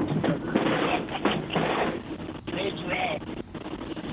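Indistinct voices and radio chatter over a steady hiss, as on a mission-control audio feed.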